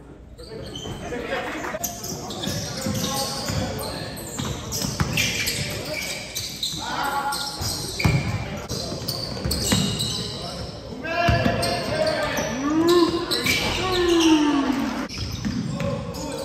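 A basketball bouncing on a hardwood gym floor during play, with players' and spectators' voices, echoing in a large hall.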